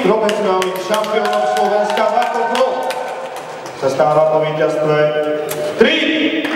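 A ring announcer's amplified voice calling out a fighter's name in two long, drawn-out calls, the first lasting about three seconds and the second starting about four seconds in.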